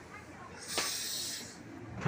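A short, sharp hiss of under a second from a KRL commuter electric train passing slowly through floodwater, starting suddenly just under a second in and then fading.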